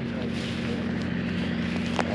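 An engine running steadily, a low even hum.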